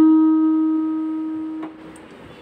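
Yamaha portable keyboard in a piano voice holding the final low Sa (D#) of a descending Mohanam scale in D-sharp, fading steadily until the key is let go and it stops about one and a half seconds in.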